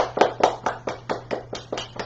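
Hand clapping: a quick, even run of about five claps a second, loudest at first and fading toward the end.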